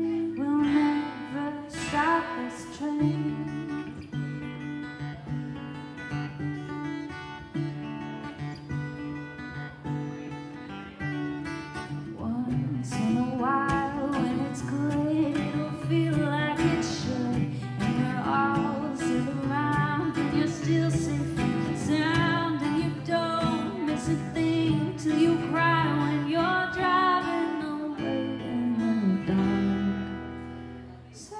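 Steel-string acoustic guitar playing an instrumental break, picked melody notes over steady bass notes.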